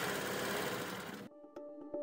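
The tail of a whooshing noise sweep from a logo sting fades and cuts off a little over a second in. Intro music then starts, with held notes over a rapid ticking percussion rhythm.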